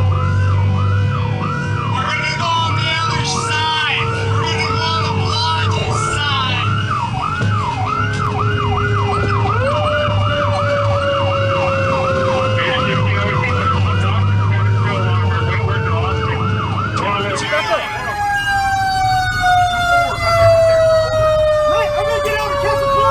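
Fire engine siren on a rapid yelp, sweeping up and down two to three times a second over the truck's steady low engine drone, with a slower siren tone gliding down beneath it. Near the end the yelp stops and a siren's long tone slides slowly downward as it winds down.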